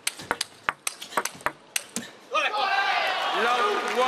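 Table tennis rally: the ball clicking sharply off bats and table in quick succession, about three to four hits a second. About two and a half seconds in the point ends and the crowd breaks into loud cheering and shouting.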